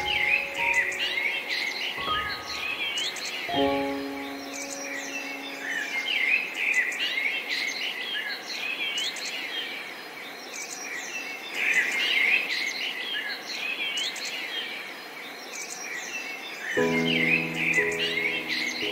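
A dense chorus of songbirds chirping and singing without pause, mixed with slow, sparse piano music. Piano chords sound about two and three and a half seconds in and fade away. A long stretch of birdsong alone follows, and the piano comes back with a new chord near the end.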